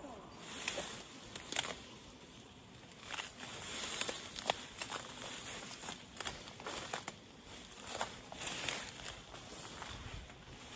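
Footsteps walking through grass and undergrowth, about one crackling step a second.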